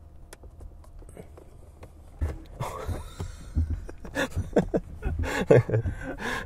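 A plastic clip-on phone mount being pressed and fumbled against a car dashboard, with dull thumps over a faint low cabin hum. A man's laughing sounds come in during the second half, and the windshield wipers, bumped on by accident, start sweeping across the glass near the end.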